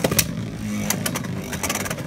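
Two Beyblade Burst spinning tops, Odin Force Excel and Unicrest Gravity Loop, whirring steadily in a clear plastic stadium just after launch. There are a few sharp clicks near the start and about a second in as they knock together or against the stadium.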